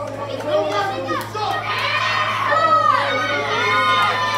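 Wrestling audience in a hall, children among them, shouting and yelling at the ring in overlapping voices, with a steady low hum underneath.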